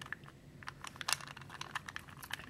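A 2x2 puzzle cube's plastic layers being turned quickly by hand through a sequence of moves: a run of light, irregular clicks and clacks.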